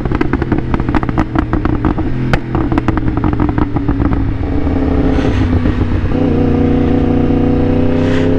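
A 2023 Yamaha R1's crossplane inline-four engine running under the rider, with a fast irregular crackle over it for the first half while its pitch eases down. It then settles to a steady, even note at lower revs.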